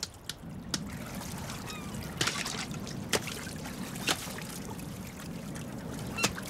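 Sea water sloshing and splashing around floating sea otters, with a few scattered sharp knocks of a clam shell struck on a stone.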